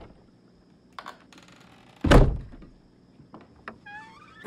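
A closet door pushed shut with one heavy thud about halfway through, after a faint click about a second in.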